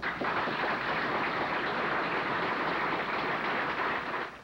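Crowd applauding steadily; the clapping starts abruptly and fades out near the end.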